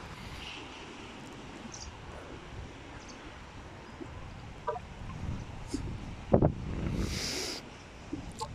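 Quiet outdoor background with a low wind rumble on the microphone, a single knock about six seconds in and a short hiss just after.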